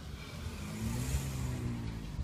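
Car engine and road noise heard from inside the cabin, the engine note rising as the car picks up speed.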